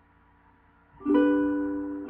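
A pause in a song, then about halfway through a single chord strummed on an acoustic plucked string instrument, ringing on and slowly fading.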